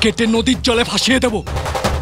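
A man's voice, raised and strained, for about the first second and a half. It gives way suddenly to a rapid run of sharp percussive hits, a dramatic film-score drum roll that carries on into the music after it.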